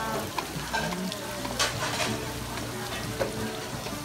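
Outdoor fish market background: a steady hiss with a few sharp clicks and clatters, and faint voices in the distance.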